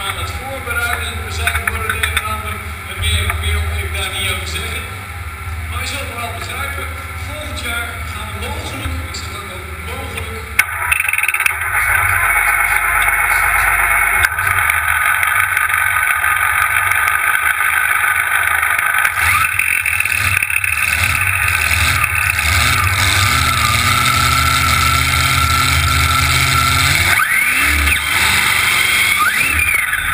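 Indistinct speech over a low rumble, then about ten seconds in a loud steady engine noise starts suddenly and holds, from the supercharged engines of a multi-engine pulling tractor. A few rising tones come near the end.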